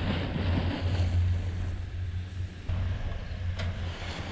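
Wind buffeting the microphone: a steady low rumble with hiss, which changes abruptly about two and a half seconds in.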